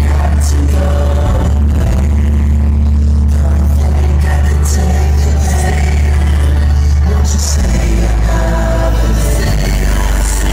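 Loud live pop concert: the band's amplified music with voices singing over it, heavy in the bass.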